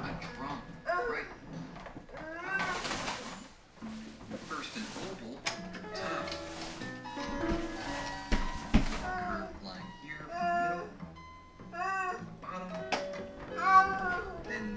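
Young children's high-pitched babbling and vocal sounds mixed with held notes from a toy electronic keyboard, with a stretch of hiss in the middle.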